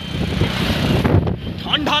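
Wind buffeting the microphone over the low, steady rumble of a motorcycle riding along a road.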